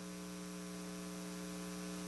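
Steady electrical mains hum on the meeting-room audio system: a low, even buzz made of several steady tones.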